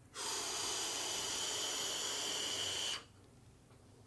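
A long drag through a sub-ohm mesh-coil vape tank with its airflow partly closed for a restricted direct-lung hit: a steady airy hiss with a thin high whistle, lasting about three seconds and stopping abruptly.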